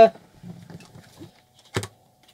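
A small screwdriver undoing the screws on the back of a marine VHF radio handset microphone: faint small clicks, then one sharp knock near the end.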